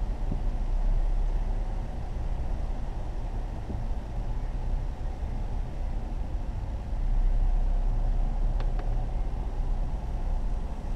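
Car engine and drivetrain running, heard from inside the cabin as a steady low rumble that grows louder about seven seconds in.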